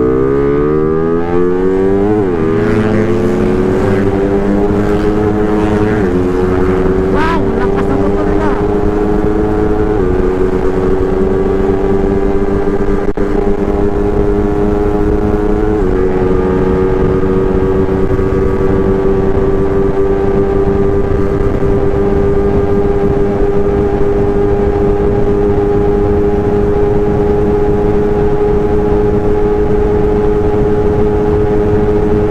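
Motorcycle engine accelerating hard through the gears: its pitch climbs, then dips briefly at each of about four upshifts in the first sixteen seconds, then holds a steady high note at cruising speed, with wind rushing over the microphone underneath.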